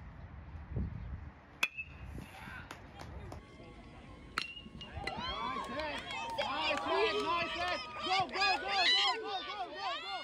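Two sharp pings of an aluminium baseball bat hitting the ball, each with a short ringing tone, about a second and a half in and again at four and a half seconds. After the second hit, spectators break into loud, overlapping high-pitched yelling and cheering.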